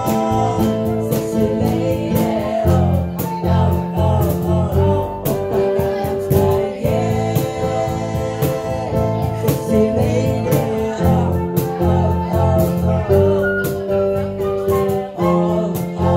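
Small live band playing: electric bass line, flute, and a cajon slapped by hand keeping a steady beat, with a woman singing at the microphone.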